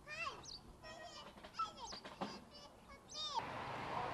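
A young child's high-pitched vocal calls: a string of short cries, several falling in pitch, over about three and a half seconds, followed by a steadier background noise near the end.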